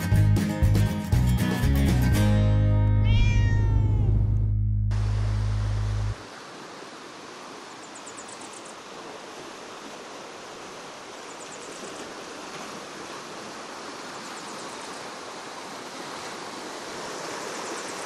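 Music plays over the first few seconds, with a cat meowing about three to four seconds in; a low held tone ends suddenly about six seconds in, leaving the steady rush of a fast river running over rocks.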